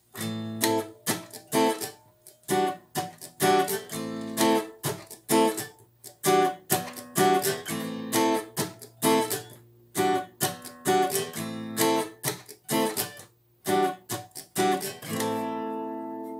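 Acoustic guitar strummed in a reggae rhythm: short, choppy chord strokes about two to three a second, moving between A minor and E minor seventh-ninth chords with two strokes on each. Near the end it stops on a chord that is left ringing.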